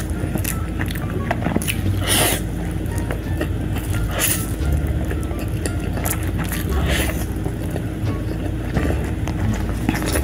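Instant noodles being slurped and chewed close to the microphone, with wet clicks from the mouth and three louder slurps about two, four and seven seconds in. Low background music runs underneath.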